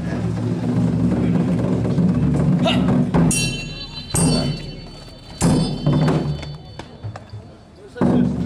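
Swords clashing in a staged duel. A ringing metallic clang comes about three seconds in, then two more strikes about a second apart, over steady drumming that drops away in the second half.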